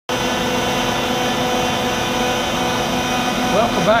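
A CNC router spindle and a dust collector running together, a loud, steady machine noise carrying a few steady tones, as the bit carves a wooden plaque.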